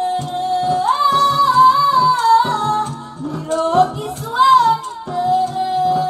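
A woman singing solo into a microphone, holding long notes with ornamented turns between them, over instrumental backing with a steady beat.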